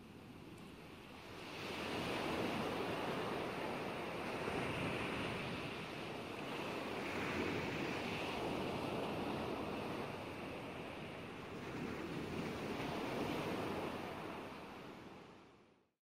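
Ocean waves washing, in swells that rise and ease every few seconds. The sound fades in over the first couple of seconds and fades out just before the end.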